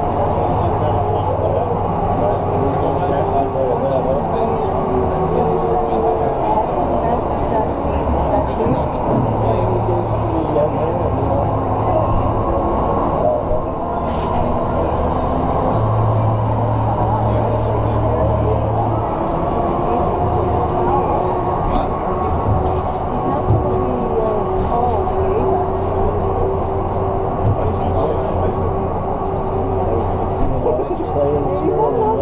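Ice resurfacer running as it circles the rink, a steady low engine hum under arena voices; the hum strengthens from about sixteen to nineteen seconds in as the machine passes close.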